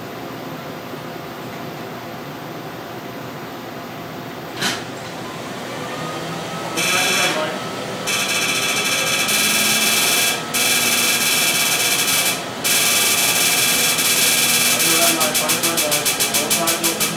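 Excimer laser firing during LASIK corneal reshaping: a loud, rapid buzz of pulses that starts about seven seconds in, stops briefly three times, and turns into a pulsing beat of about five pulses a second near the end.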